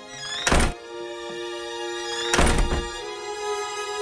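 Two loud thuds about two seconds apart, a wooden door being shut, over slow, sad background music with long held notes.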